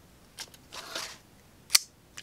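Soft rustle of the knife coming out of its fabric pouch, then one sharp, loud click near the end as the Bear Ops Bear Swipe IV folding knife's assisted-opening tanto blade snaps open.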